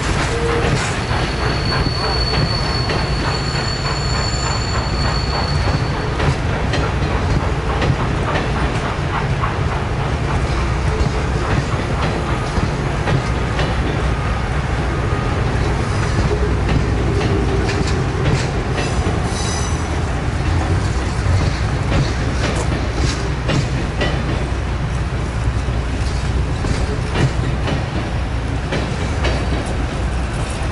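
Passenger train cars rolling past, steel wheels rumbling and clicking over the rail joints. A thin, high wheel squeal sounds for a few seconds near the start.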